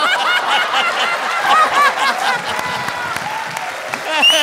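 A studio audience laughing and applauding, many voices at once, easing off near the end.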